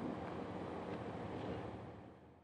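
Faint, steady outdoor background noise, an even rush without distinct events, fading out near the end.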